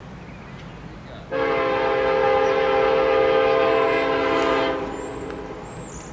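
Diesel locomotive air horn sounding one long blast of about three seconds, a steady chord of several notes, from a train approaching down the line.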